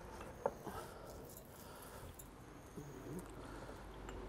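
Faint handling sounds of fingers taking salt from a glass jar, with one brief click about half a second in, over a quiet low background.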